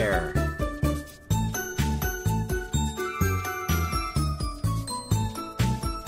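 Upbeat background music with a steady beat and bright, bell-like jingling tones. The music drops out briefly about a second in and then resumes. A voice says a single word right at the start.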